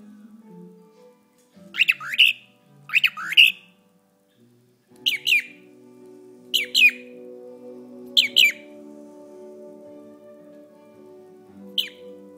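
Young cockatiel giving loud, sharp two-note chirps six times, one to two seconds apart; its owner hears this chirping as the bird saying its own name, "Jim, Jim".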